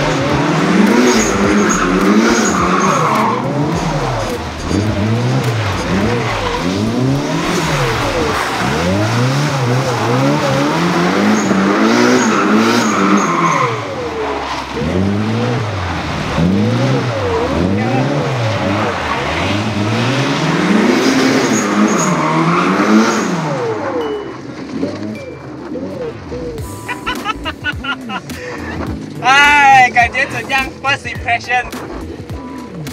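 A drift car's engine revving hard and dropping back again and again, its pitch climbing and falling about once a second, with tyre noise as the car slides on a wet track. The revving stops about three-quarters of the way through, and laughter comes in near the end.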